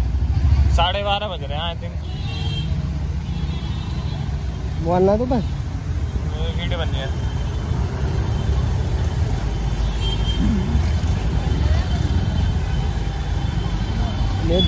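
Steady low rumble of slow, jammed street traffic and the riding two-wheeler's engine, crawling through standing water. Brief voices call out a few times, about a second in and again around five to seven seconds in.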